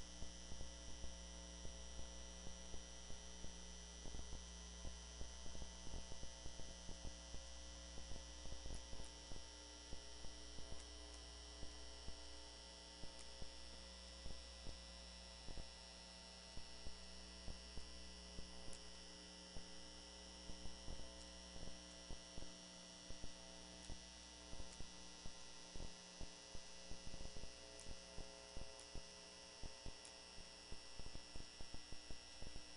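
Steady electrical mains hum in the audio feed, made of several tones held at once, with frequent short faint crackles scattered through it.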